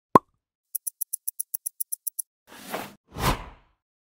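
Logo-intro sound effects: a single sharp pop, then a quick run of about a dozen high, thin stopwatch-style ticks, about eight a second, then two whooshes.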